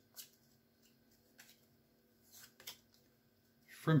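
Trading cards handled and flicked through by hand: a few faint, scattered clicks and rustles as cards slide off the top of the stack.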